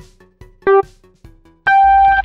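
Electronic race-start countdown beeps. A short beep comes about two-thirds of a second in, then a longer, higher-pitched 'go' beep starts near the end, the signal to launch.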